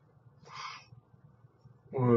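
A short, faint, breathy puff of air from a person's mouth about half a second in, with no voice in it.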